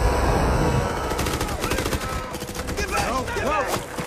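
Rapid automatic rifle fire in a film battle sound mix, in dense runs of shots from about a second in, over a low rumble at the start. Arching, rising-and-falling whistling sounds cut through near the end.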